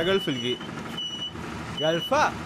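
Auto-rickshaw reversing beeper giving a high, steady beep that switches on and off about three times, with a man's voice briefly at the start and near the end.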